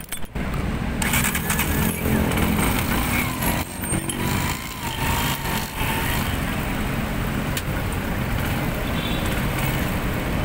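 City street traffic: cars, vans and motorcycles running in queued, slow-moving traffic, a steady low rumble of engines and road noise, with a brief wavering tone about halfway through.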